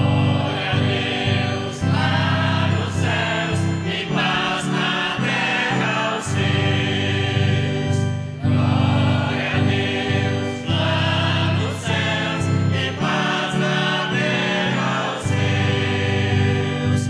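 A choir singing a liturgical song in short phrases over held organ-like keyboard chords.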